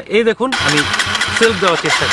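A Yamaha motorcycle's electric starter cranking the engine, starting about half a second in as a loud, steady churn with regular low pulses.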